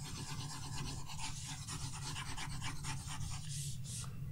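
Faint, scratchy rubbing of a stylus stroking a graphics tablet in many short strokes while painting, over a steady low hum.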